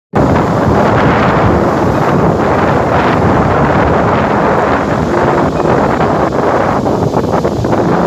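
Strong wind buffeting the microphone over heavy surf breaking and washing up a pebble beach, a loud continuous rush with irregular gusty surges.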